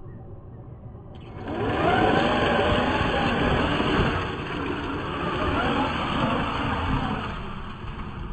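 Traxxas TRX6 6x6 RC truck's electric motor and geartrain whining, rising in pitch as it throttles up about a second and a half in and again near the end, while its paddle tires churn and spray through wet mud.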